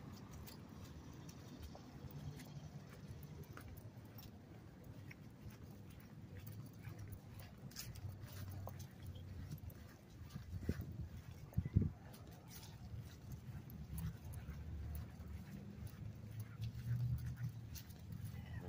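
Faint footsteps on grass with low rumbling phone-handling noise, scattered light clicks, and two sharp knocks about eleven seconds in.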